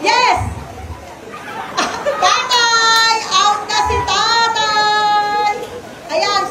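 High-pitched voices calling out in long drawn-out cries, the lively shouting of children and onlookers at a party game.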